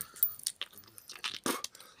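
Irregular crackling and clicking handling noises close to the microphone, a tissue being rubbed around the nose, with one sharper, louder sound about one and a half seconds in.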